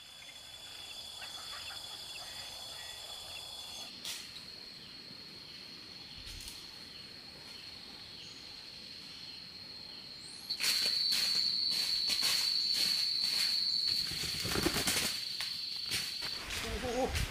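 Forest insects buzzing in a steady high whine. From about ten seconds in, a long-tailed bird caught in a trap beats its wings again and again, flapping and thrashing in the undergrowth.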